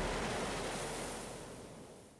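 Ocean waves washing on a shore, an even rushing noise that fades out steadily.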